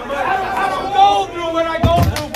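Several people's voices talking and calling out over one another in a large room, with a short low thump near the end.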